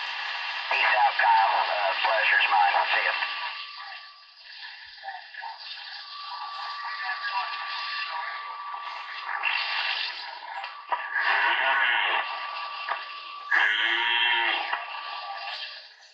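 CB base radio (Galaxy 2547) receiving distant stations over skip: thin, tinny voices coming and going through a steady hiss of static, with a steady whistling tone through the middle seconds.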